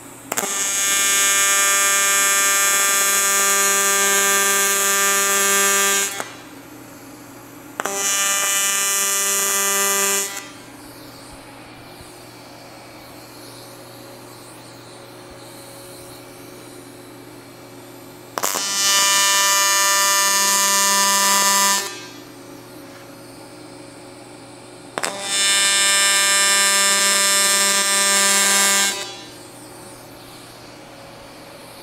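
AC TIG welding arc on aluminium, buzzing steadily in four separate tack welds of about two and a half to six seconds each, with the AC frequency set high.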